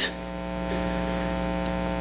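Steady electrical mains hum in the sound system: a buzzy drone of several even, unchanging tones.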